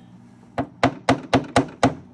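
A flat metal hand tool jabbing the rusted inner rocker sheet metal of a 1994 Mazda MX-5 Miata: six sharp taps, about four a second, starting half a second in. It is poking through rust-weakened metal to find the holes.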